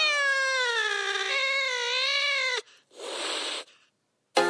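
A cat's long drawn-out meow, falling in pitch, then stepping up and bending before it stops, about two and a half seconds long. A short hiss-like burst of noise follows near the end.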